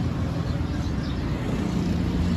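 Steady low background rumble, with a low hum growing stronger about a second and a half in.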